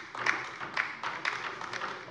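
Light applause from a few people, with single claps standing out about twice a second over a soft hiss.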